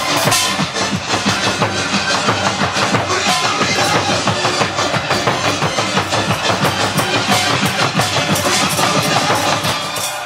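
Korean barrel drums (buk) beaten in a dense, driving rhythm along with music; it all stops right at the end.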